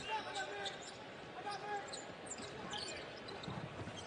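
Basketball being dribbled on a hardwood court amid a murmuring arena crowd, heard faintly with a few distant voices.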